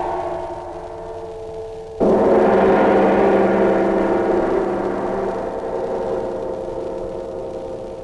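A deep, bell-like metallic chime struck once about two seconds in, its many overtones ringing out and fading slowly. An earlier strike is dying away before it.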